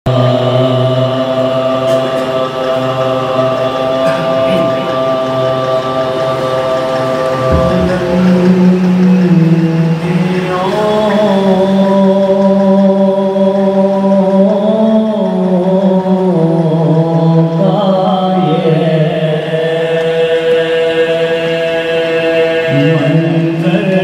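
A group of men chanting an Urdu marsiya, a Shia mourning elegy, without instruments: a lead reciter with the others joining in unison on long held notes that move to a new pitch every few seconds.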